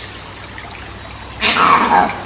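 Jungle ambience with a steady background hiss; about one and a half seconds in, a loud monkey scream lasting about half a second.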